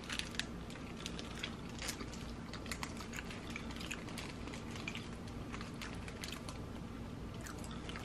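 People chewing bites of soft cake, with many small scattered mouth clicks and smacks.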